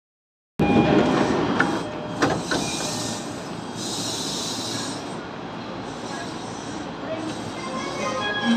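Electric commuter train moving along the station platform: steady rolling wheel-and-rail noise with a few sharp clicks about two seconds in and a hissing stretch after.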